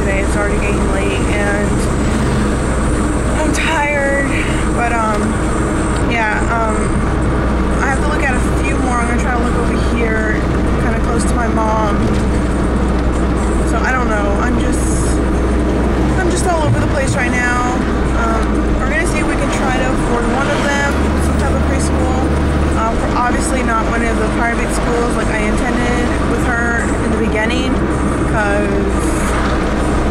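A woman talking inside a car, over the steady low hum of the car's engine and road noise in the cabin.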